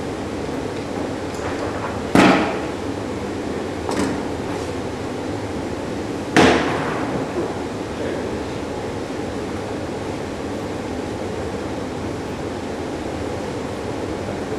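A leather tool bag loaded with tools slammed down on a wooden workbench: three heavy knocks, two loud ones about four seconds apart with a lighter one between, each ringing out briefly.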